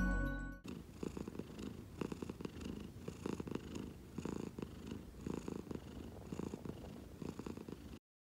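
A domestic cat purring steadily, swelling and easing about once a second with its breaths. Music cuts off less than a second in.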